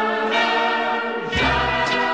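Opening theme music: sustained held chords that change about a third of a second in, with a low bass line coming in about a second and a half in.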